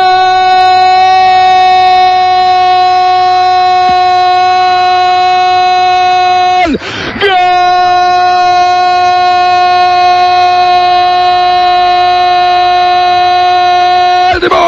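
A football commentator's drawn-out goal cry, 'goool', held loud on one steady high note for about seven seconds, broken by a quick breath, then held again for about seven seconds more.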